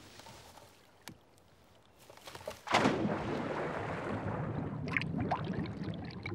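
Quiet at first, then a sudden splash of someone diving into the sea about halfway through, followed by a steady underwater rumble with bubbling.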